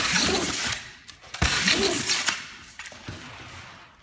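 Packing tape pulled off a handheld tape gun and pressed along the top of a cardboard box: two long tape screeches, each starting with a sharp knock, about a second and a half apart.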